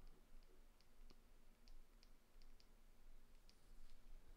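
Faint, irregular light ticks of a stylus tapping on a tablet screen while handwriting, about ten in four seconds, over near-silent room tone.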